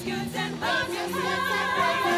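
Show choir singing, the voices settling into long held, wavering notes from about half a second in.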